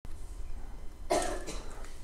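A man's single short cough, about a second in, lasting about half a second.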